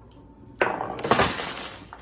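A marble bowled down a miniature bowling lane crashes into the small pins and scatters them: a sudden clatter about half a second in, loudest around a second in, then dying away.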